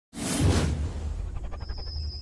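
Intro sound effect: a loud whoosh over a deep bass rumble, followed by a quick run of ticks and a thin, high ringing tone that starts about one and a half seconds in.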